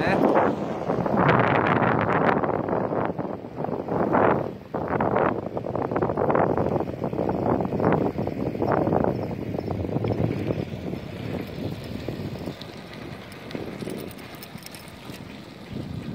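Wind buffeting the phone's microphone while riding an old bicycle fast downhill, a rushing, gusty noise that is loudest in the first half and eases off in the last few seconds as the bike slows.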